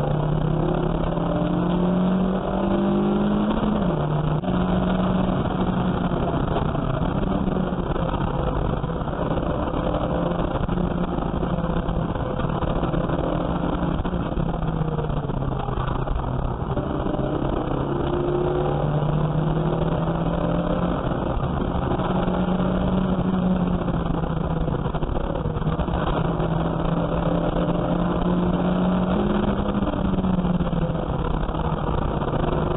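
A race car's engine heard from inside the cabin, running hard under racing load. Its pitch climbs, drops suddenly about four seconds in, sinks lower through the middle, then climbs again.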